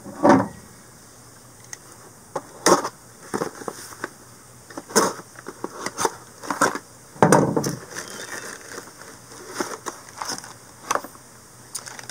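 Small cardboard box being handled and opened by hand: irregular scrapes, taps and rustles of cardboard and packaging, with a longer, louder rustle about seven seconds in.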